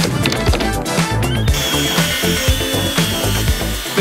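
Background music with a steady beat. From about a second and a half in, a Bosch track saw cuts plywood with a steady high whine, stopping just before the end.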